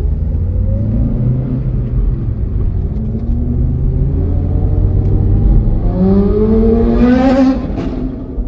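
A Chevrolet Celta's 1.0-litre four-cylinder engine, heard from inside the cabin over road rumble as the car drives through town. The engine note rises in pitch several times as it accelerates, with the loudest rise near the end.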